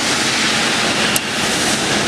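KIMHOO TF8L CNC metal lathe taking a smooth finishing cut on a steel shaft, the spindle turning and the tool cutting with a loud, even hiss. There is one faint tick about a second in.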